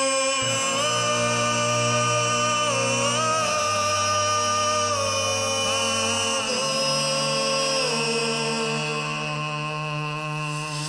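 Loop-station beatbox performance: layered vocal loops of long held sung notes that step in pitch, over a low sustained bass drone.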